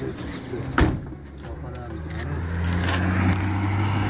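A car door latch clicks once, sharply, about a second in. Under it runs a steady low hum that grows louder after about two seconds.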